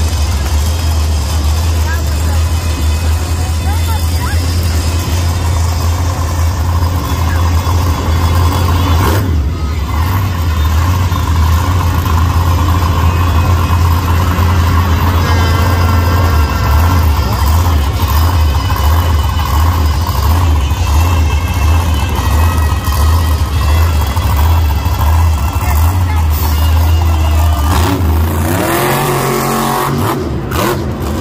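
El Toro Loco monster truck's supercharged V8 running with a deep, steady rumble, then revving up with a rising pitch near the end. An arena announcer's voice is heard over the PA.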